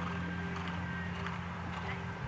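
Horse cantering on a sand arena, its soft hoofbeats coming about twice a second, under a steady low held tone from background music.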